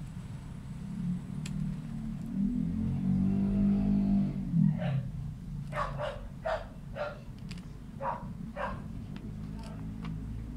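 A run of about eight short, sharp animal calls, roughly two a second, over a steady low hum; just before them a droning sound swells and fades over a couple of seconds.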